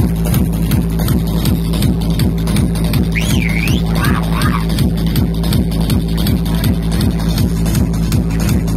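Loud electronic dance music played through a large stack of DJ speakers, driven by a fast, steady bass beat. A few high sliding tones ride over it about three and four seconds in.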